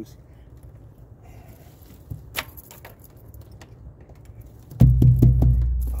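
Light clicks and knocks from handling a loose stand, then near the end a sudden deep drum boom with a few quick rattles on top, ringing on and fading slowly.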